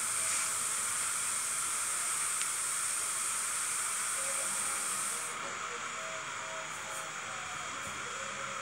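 A steady hiss. It is brighter and a little louder until about five seconds in, then drops to a fainter, even hiss.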